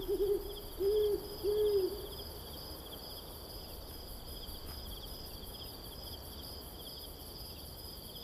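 An owl hooting a few times in the first two seconds, each hoot rising and falling in pitch, over continuous high chirping of crickets.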